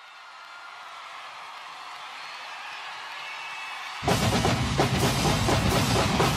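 Live concert music: a swelling wash of sound builds for about four seconds, then a marching band with heavy drums and brass comes in loudly and abruptly.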